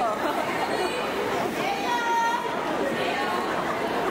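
Crowd chatter in a large gymnasium, many voices talking at once. About two seconds in, one high voice calls out briefly over the crowd.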